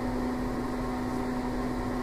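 Steady low machine hum with even fan-like noise from running lab equipment, holding one low tone without change.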